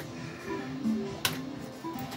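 Cloud 999 fruit machine playing its electronic bleeping tune while its reels spin, with one sharp click a little over a second in.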